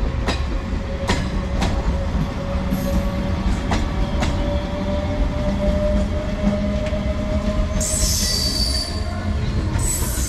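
MEMU passenger train running past over the rails: a steady rumble with sharp clicks of wheels over rail joints in the first few seconds, and a thin steady whine. High-pitched wheel squeal comes in about eight seconds in and again at the very end.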